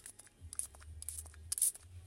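A few light clicks and handling noises, then a short hiss from a small pump spray bottle of shimmer paint squirting a mist about one and a half seconds in. The nozzle was pointing the wrong way.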